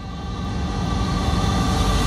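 A cinematic riser in the film's soundtrack: a noisy swell, heaviest in the bass, with a few held tones, growing steadily louder as a build-up into the music.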